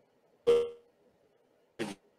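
Two short, clipped fragments of a man's voice, one about half a second in and one near the end, each cut off suddenly by dead silence: speech chopped up by a poor video-call connection over Wi-Fi.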